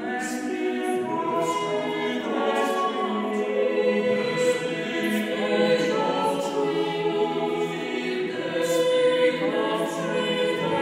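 Mixed a cappella vocal ensemble of eight voices, sopranos, altos, tenors and basses, singing in several parts, holding long chords that shift every second or so, with the hiss of sung consonants coming through.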